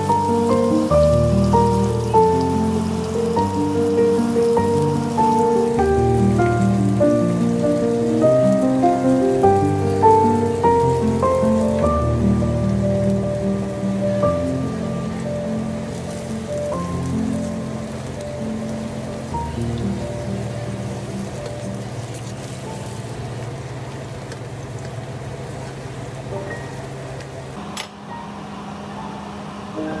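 Potato slices frying in oil in a pan, a steady sizzle, under background instrumental music: a melody of held notes over a bass line that thins out about halfway through and grows quieter.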